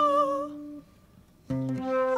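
Improvised acoustic music: plucked acoustic guitar notes under a held, wavering high melodic line. The music breaks off for about half a second in the middle and comes back with a new guitar note.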